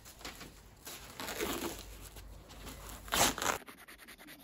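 Old felt and cloth covering being peeled and torn off a convertible hood frame rail: rustling and tearing, with a louder rip about three seconds in. Near the end come quick, even scraping strokes on the old glued wood.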